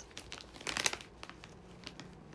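Plastic snack packaging crinkling and rustling as it is handled, with the loudest burst of crackles a little under a second in.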